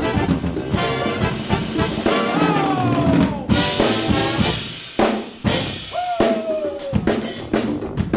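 Funk band playing: drum kit, electric guitar and bass with a horn section. Twice a note slides down in pitch, and the band stops short for brief breaks in between.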